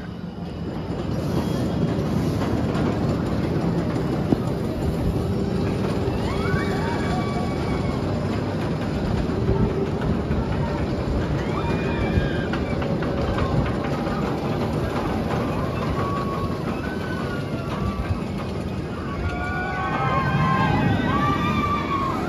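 Steel roller coaster train running along its track with a loud, steady roar. Riders' screams rise over it a few times, most densely near the end.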